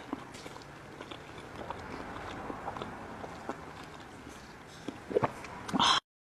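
Close-miked chewing of raw small squid sashimi, with soft wet mouth sounds and small clicks. A few louder smacks come near the end, then one loud brief mouth sound.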